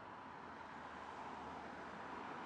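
Faint road traffic: the even rush of cars driving along a street, growing slowly louder as one approaches.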